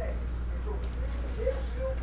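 Trading cards being flipped and set down by hand, giving a few faint light clicks over a steady low hum.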